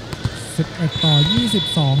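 Male sports commentator calling the score in Thai over the hall's background noise, with a few light knocks. A thin, steady high tone sounds through the second half.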